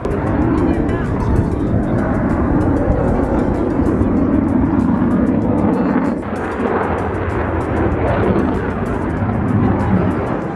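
A large helicopter flying its display, its rotor and engine noise loud and steady throughout.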